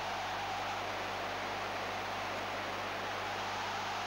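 Steady hiss with a faint low hum, the background noise of an old broadcast recording.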